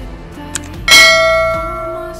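Notification-bell chime sound effect for an animated subscribe button: a short click, then one bright ding about a second in that rings on and fades. Soft background music runs underneath.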